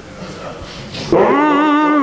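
A man's chanting voice, a Quran reciter in melodic tajweed style, begins about a second in and holds one long, slightly wavering note.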